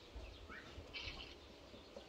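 Quiet outdoor background with a few faint short bird chirps, one rising chirp about half a second in and another high chirp about a second in.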